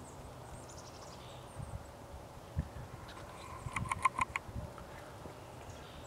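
Downy woodpecker pecking at a vine: a quick run of about six sharp taps a little past the middle, against faint outdoor background with a few soft low thumps.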